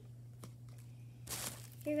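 A short rustle of paper being handled, about a second and a half in, after a faint click. A steady low hum runs underneath.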